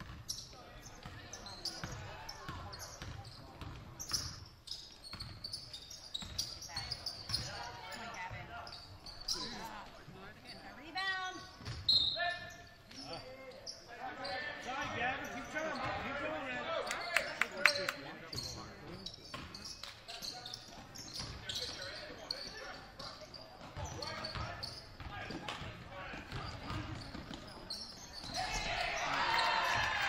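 Basketball game in a hardwood-floored gym: a ball bouncing on the floor over and over, with scattered voices of players and spectators calling out.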